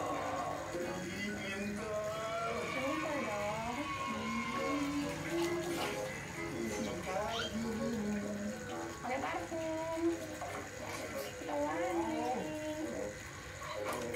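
Television audio playing music and voices from its speaker.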